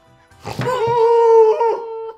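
A person's voice holding one long, steady note, like a mock howl or a sung 'ooh', loud, starting about half a second in and stopping just before the end.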